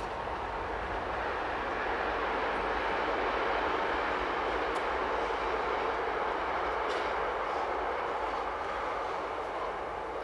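A vehicle passing at a distance: an even rumbling noise that swells over the first few seconds and slowly fades again.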